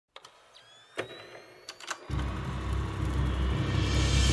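Intro sound effects of a film projector starting: a few sharp mechanical clicks and a faint rising whine, then about two seconds in a deep low drone comes in suddenly and builds.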